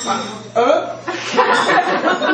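An audience laughing and chuckling.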